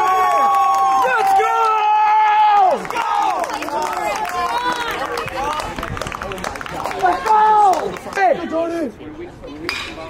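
Baseball players and teammates yelling and cheering: several long held shouts for about the first three seconds, then a jumble of overlapping excited shouts as they celebrate a play.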